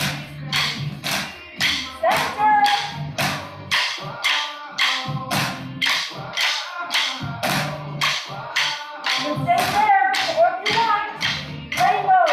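Upbeat workout music with a singing voice over a steady, sharp beat of about three strokes a second.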